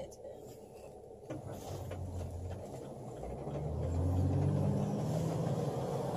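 Engine and road noise inside a passenger van's cabin: a low drone that sets in about a second in and grows steadily louder.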